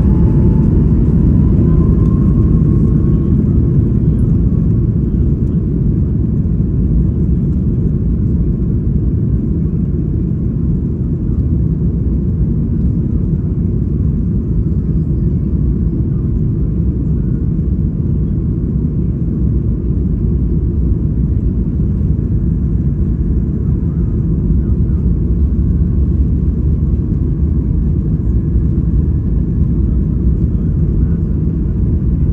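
Boeing 737 MAX 8's CFM LEAP-1B engines at takeoff power, heard inside the cabin over the wing: a loud, steady, deep rumble mixed with runway noise as the jet accelerates on its takeoff roll. A faint rising whine sounds in the first couple of seconds.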